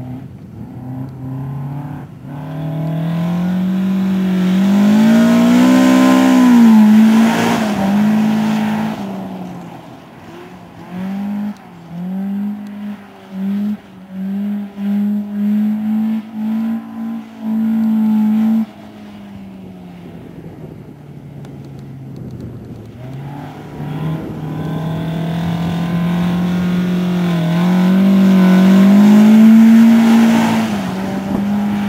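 Toyota Corolla AE86's four-cylinder engine revving hard as the car slides and spins its tyres on loose dirt. A long climb in revs comes first, then a run of about ten short, sharp stabs of the throttle, a quieter lull, and a long rise again near the end as the car comes closer.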